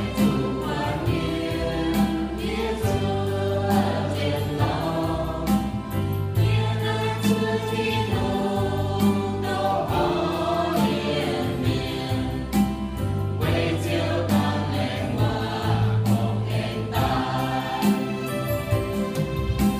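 Mixed choir of men and women singing a worship song in the Iu-Mien language into microphones, over sustained low accompaniment and a steady beat.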